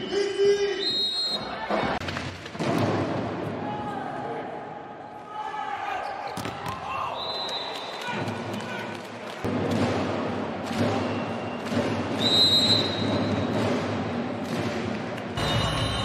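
Volleyball arena sound: crowd noise with sharp ball strikes and a few short, high whistle tones.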